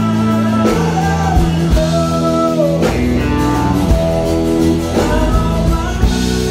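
Live country-rock band playing loud: a male lead vocalist sings over electric guitar and a drum kit, with drum strikes about once a second.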